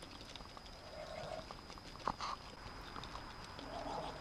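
White domestic geese nibbling grain off the ground: many small, quiet clicks of their bills in the feed, with a soft low goose murmur about a second in and a sharper, louder sound just past the middle.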